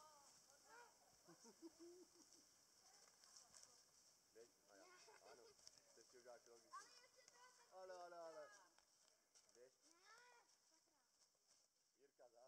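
Near silence, with faint, distant children's voices calling and talking now and then, clearest about eight seconds in, over a steady faint high hiss.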